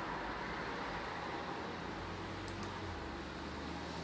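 Steady room noise: an even hiss with a low hum underneath, and two faint clicks about two and a half seconds in.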